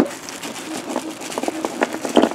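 Plastic bags crinkling and small loose steel parts clicking and clinking against each other as hands sort through the bagged accessories.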